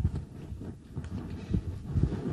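Irregular low thumps and knocks, several a second.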